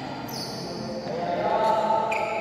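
Indoor badminton hall ambience: voices carrying in the large room, with thuds of play and footsteps on the court. A pitched, voice-like sound swells in the second half.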